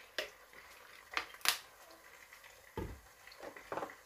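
A few light clicks and knocks from handling a plastic bottle of fish sauce over a pot of raw chicken, then a dull thump late on as the bottle is set down on the kitchen worktop.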